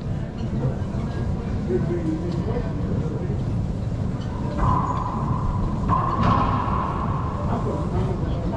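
A short laugh over a steady low rumble, with a held mid-pitched tone sounding twice in the second half, each about a second long.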